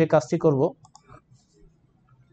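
A few faint, short computer clicks from a mouse or keyboard, following a man's voice that stops under a second in.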